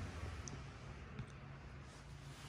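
Quiet room tone with a low steady hum and a couple of faint clicks, one about half a second in and another just over a second in.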